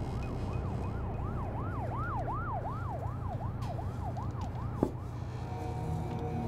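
An emergency-vehicle siren sweeping quickly up and down in pitch, about three sweeps a second, growing louder and then fading away, over a low steady rumble. A single sharp click comes near the end.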